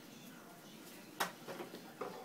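Hands handling a plastic bottle on a SodaStream soda maker: a single sharp click a little over a second in as the bottle is worked loose from the machine, followed by a few faint knocks, over low room tone.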